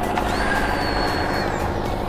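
A generator engine running steadily, with the high whine of a handheld electric air pump that spins up at the start, holds, then winds down in pitch near the end.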